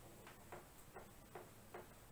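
Faint, short strokes of a marker writing on a whiteboard: about five soft clicks in two seconds, unevenly spaced.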